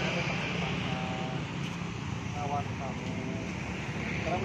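Brief, indistinct snatches of a man's voice over a steady low hum of city traffic.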